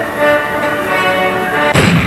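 Grand Cross Chronicle medal pusher's game music with steady sustained tones during its jackpot wheel spin, then near the end a sudden heavy boom sound effect.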